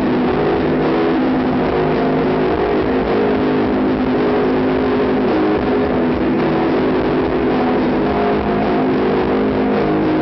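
A live dream-pop band playing a song: bass guitar, drums and keyboards in a loud, dense, steady wash of sustained notes, recorded from the audience.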